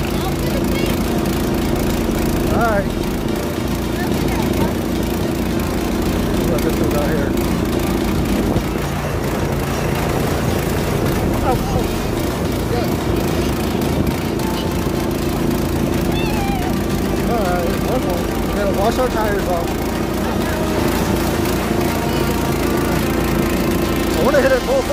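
Carter Trail Runner off-road go-kart's single-cylinder engine running steadily under throttle as the kart drives across muddy grass.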